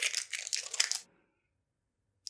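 Packaging crinkling as a small perfume oil roll-on bottle is unwrapped and handled, lasting about a second before cutting off abruptly.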